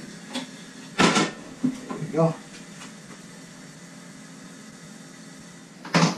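A single loud metal clunk about a second in as a large aluminium stockpot is set down on a gas stove. A brief spoken exclamation follows, then a faint steady hiss.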